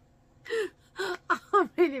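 A woman laughing: about five short, breathy bursts, each falling in pitch, starting about half a second in.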